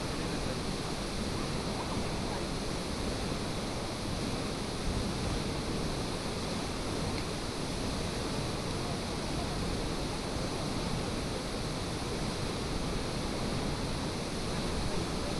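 A tall waterfall pouring into its plunge pool: a steady, unbroken rush of water.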